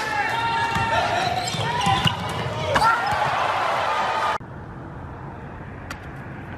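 Indoor basketball game: sneakers squeaking and a ball bouncing on a hardwood gym floor, over crowd voices in the hall. Just past four seconds the sound cuts to a quieter outdoor background with a few clicks.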